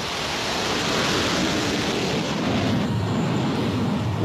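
Jet aircraft engine noise: a steady, even rushing sound with a low rumble beneath it.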